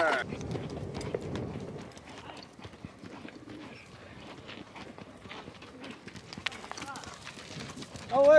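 Horse's hooves on desert sand: a steady run of soft hoofbeats as the horse goes along under its rider, louder in the first second.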